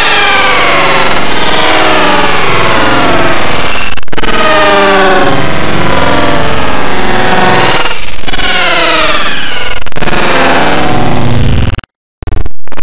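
Loud, heavily distorted and processed electronic audio full of falling pitch glides. It breaks off and restarts about every few seconds, and cuts out briefly near the end.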